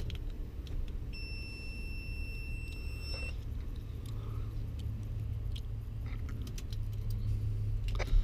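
Car keys jangling at the ignition, and about a second in a steady electronic beep that holds for about two seconds and then cuts off, over a low steady hum.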